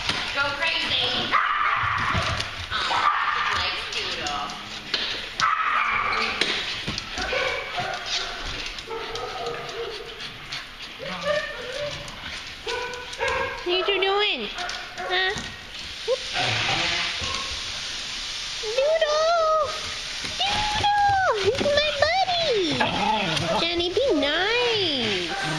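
Dogs at play, giving short yips and barks, with a run of high whines that rise and fall over the last few seconds.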